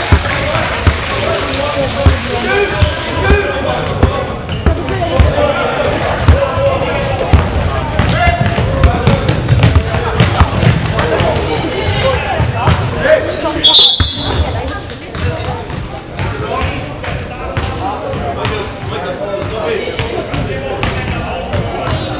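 Basketball game in a reverberant sports hall: a ball bouncing on the wooden court again and again, with players and spectators calling out. About two-thirds of the way through, a short referee's whistle sounds.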